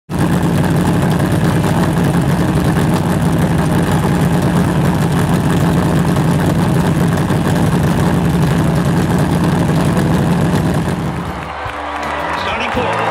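Modified race car's V8 engine running loudly and steadily, heard close to its open exhaust tip. It fades out near the end.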